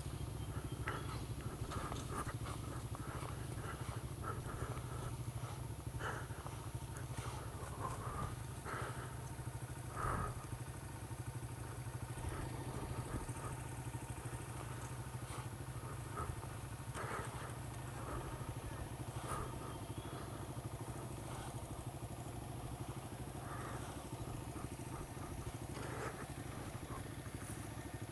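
Honda CRF single-cylinder four-stroke dirt bike engine idling low and steady.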